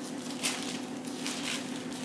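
Thin Bible pages being leafed through by hand: a few soft papery rustles and swishes.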